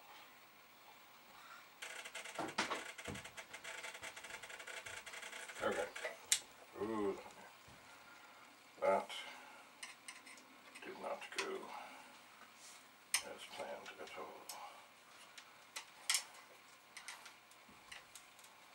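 Small clicks and clatter of hands handling parts on an electronics workbench, with a few brief low murmurs from a man. For a few seconds near the start a steady hiss with faint even tones runs underneath.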